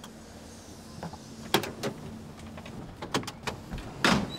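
A few sharp clicks and knocks from a car that won't start, over a faint steady hum: one about one and a half seconds in, then a small cluster near the end, with no engine cranking or running.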